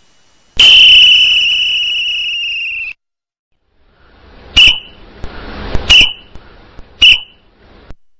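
A whistle blown as a signal: one long blast of about two and a half seconds that slowly fades, then three short sharp blasts a little over a second apart.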